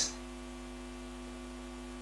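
Steady low electrical hum from the sound system's microphones, several steady tones stacked together over a faint hiss.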